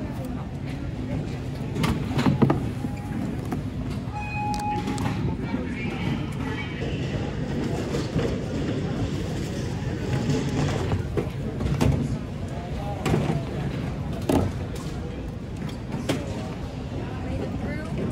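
Airport security checkpoint ambience: a steady rumble of machinery and background voices, with several sharp knocks and clatters and a short electronic beep about four and a half seconds in.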